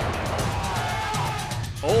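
Background music with a steady beat, and a sports commentator's voice coming in near the end.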